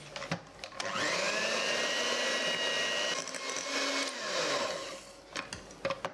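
Electric hand mixer with wire beaters mixing flour into cake batter in a glass bowl: the motor whine rises as it comes up to speed about a second in, runs steadily, then winds down and stops about four to five seconds in. A few light clicks and knocks before it starts and near the end.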